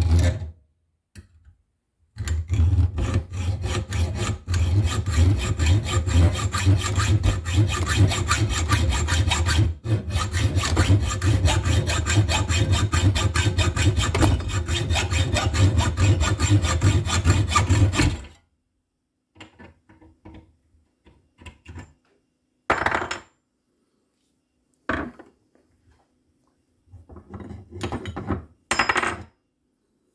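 Hacksaw cutting through a steel plate clamped in a bench vise: fast, steady back-and-forth strokes, starting about two seconds in and running for about sixteen seconds until the cut is through. A few scattered knocks and clinks follow.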